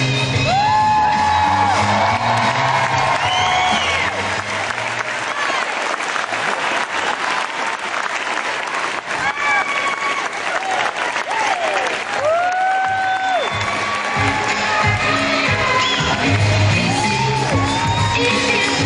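Pop dance music playing loudly with audience clapping and cheering over it. The beat drops out for several seconds in the middle, leaving the clapping and whoops most prominent, then comes back near the end.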